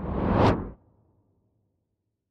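Cinematic trailer whoosh sound effect: a noisy swell that rises in pitch and loudness to a sharp peak about half a second in, then cuts off, leaving a low rumble that fades within the next second.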